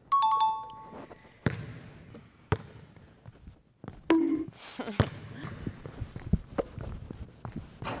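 Two-note ding-dong chime sound effect, high note then low, at the start, marking a made basket. Then a basketball thuds on the hardwood gym floor three times, the strikes about a second or more apart.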